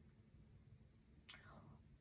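Near silence: room tone in a pause of speech, with one faint, short intake of breath about a second and a half in.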